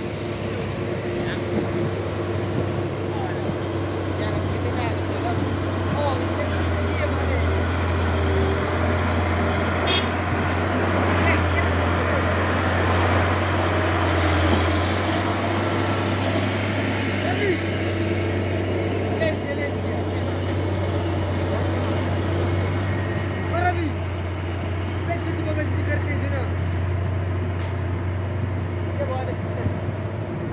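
Diesel engine of a tarp-covered cargo truck labouring up a steep dirt grade, a steady low hum that grows louder as the truck passes close about halfway through, with a spell of tyre and road noise. Onlookers talk throughout.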